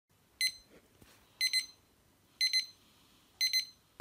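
Digital alarm clock going off: groups of short, high electronic beeps once a second, the first group a single beep and the later groups several beeps in quick succession.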